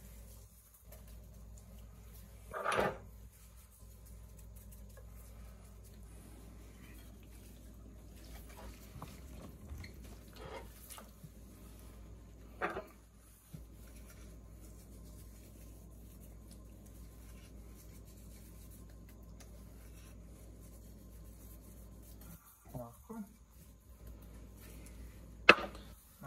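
Quiet kitchen room tone with a steady low hum, broken by a few brief handling sounds as gloved hands salt and rub the skin of a whole boiled chicken. A sharp click comes just before the end.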